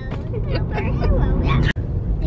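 Laughter over the steady low rumble of road noise inside a moving car's cabin. The sound drops out for an instant near the end.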